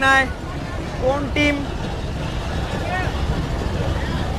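Short phrases of a man's commentary in Bengali over a steady low rumble of outdoor background noise.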